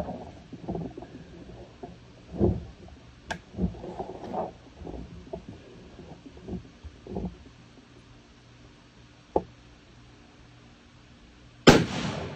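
A single shot from a Remington 700 bolt-action rifle in .270 Winchester, about a second before the end: one sudden, loud crack with a short ringing tail.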